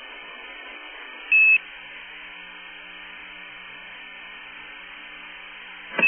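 Open radio link hissing faintly with no one speaking, broken by a short, loud single-pitch beep about a second in; the same beep sounds again at the very end as the channel is keyed for the next transmission.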